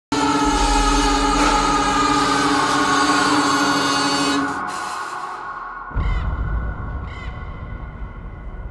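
Eerie horror-film score: a loud, dense sustained chord over a deep drone that fades out after about four and a half seconds. About six seconds in, a sudden low boom hits, followed by two short chirps about a second apart.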